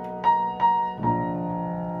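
Upright piano: a held B major 7 chord with two single notes struck over it, then a new chord struck about a second in and left ringing.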